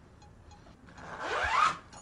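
A bag's zipper pulled open in one quick stroke of a bit under a second, rising in pitch, starting about a second in.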